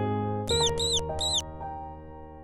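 Three short, high squeaks in quick succession about half a second in, each rising then falling in pitch, over background music of held keyboard chords.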